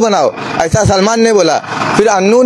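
A man's voice speaking, its pitch gliding up and down; a brief hiss of background noise near the end.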